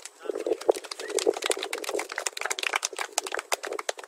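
A group of people clapping: dense, irregular claps, with a few voices mixed in.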